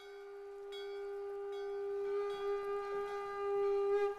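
Background film music: a single long held note that swells gradually louder, with faint higher overtones entering under it.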